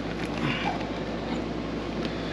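Faint handling sounds of a synthetic-leather seat cover being tucked and smoothed by hand, over a steady background hum.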